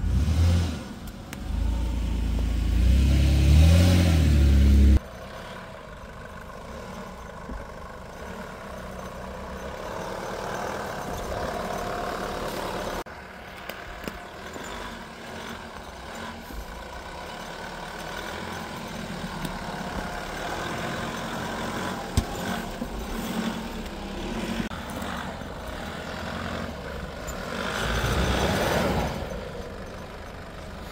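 Toyota Land Cruiser Prado engine revving hard close by as it crawls up a rutted dirt climb, rising in pitch and cutting off suddenly about five seconds in. After that a Nissan Patrol's engine is working up the track, quieter and further off, swelling again near the end.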